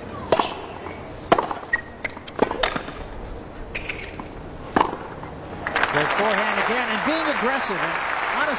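Tennis rally: a serve and about four more racket strikes on the ball, roughly a second apart, then the crowd applauds the end of the point for the last two seconds or so.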